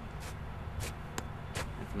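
A few brief swishes and rustles of clothing as a leg is swung forward, over a low, steady outdoor rumble.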